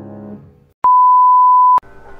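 Music fades out, then a single loud electronic beep: one steady pure tone held for about a second, cutting in and out abruptly with a click at each end.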